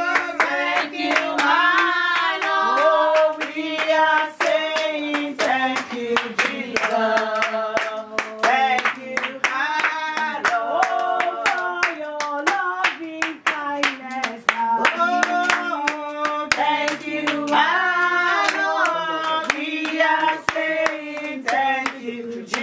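People singing a song together in a small room, with hand clapping to the beat throughout.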